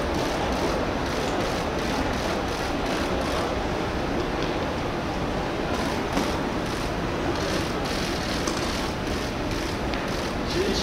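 Steady, even background noise of a busy airport terminal hall, with no distinct events standing out.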